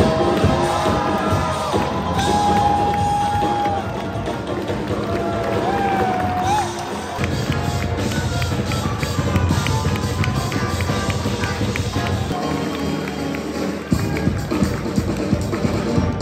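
Rock music from a live band: a drum-kit beat under a lead line that slides in pitch during the first half, then a denser, busier stretch.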